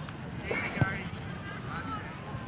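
Distant shouts of players and spectators on an outdoor football pitch, with a dull thud a little under a second in.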